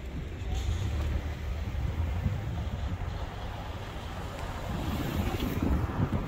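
Wind buffeting the microphone as a low, gusty rumble that grows stronger near the end.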